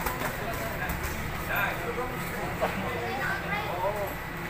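Spectators' and cornermen's voices at ringside, scattered calls and chatter over the noise of a crowded gym, with a few short knocks.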